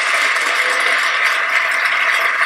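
Audience applause from the keynote video played through computer speakers: a steady, dense clatter of many hands clapping, thin and without low end.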